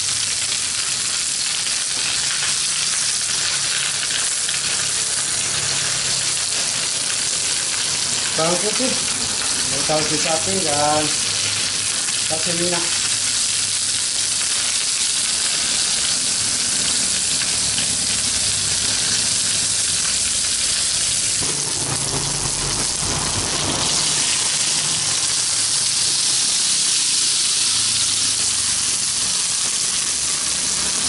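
Whole snakehead fish sizzling in hot oil on a flat griddle pan over a gas flame: a steady frying hiss.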